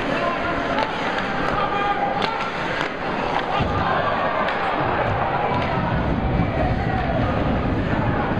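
Live sound of a college ice hockey game in an arena: crowd voices throughout, with sharp clicks of sticks and puck. From about halfway a low swell of crowd noise joins in.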